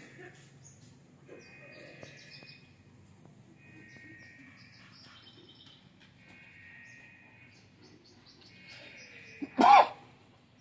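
A bird calls in repeated short high phrases every second or two. Near the end comes a brief, much louder animal call.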